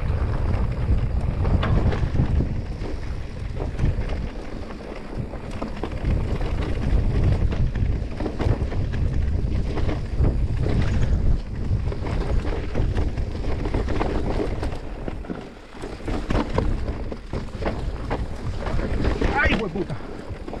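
Wind buffeting the action camera's microphone over the rumble and rattle of an electric mountain bike riding a rough dirt singletrack, with tyres on loose stones and the bike jolting over bumps. The noise eases briefly about three-quarters of the way through.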